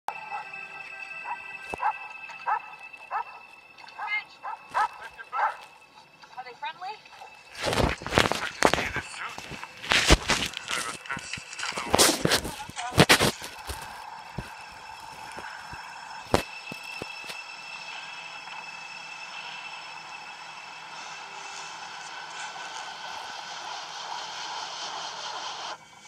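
A film soundtrack coming from a TV speaker and picked up in the room. Short pitched sounds at first, then a cluster of loud sharp crackles and knocks in the middle, then a steady background of music and ambience.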